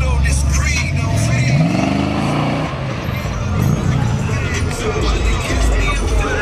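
Oldsmobile Cutlass convertible's engine revving as the car pulls away. Its pitch rises for about a second starting a second and a half in, with a shorter rise a couple of seconds later, over steady heavy bass music and voices.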